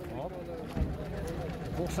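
Voices of people talking in the background, faint and indistinct, over a low steady outdoor rumble.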